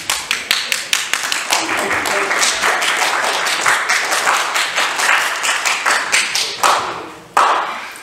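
Church congregation applauding, a dense patter of hand claps that dies away about seven seconds in.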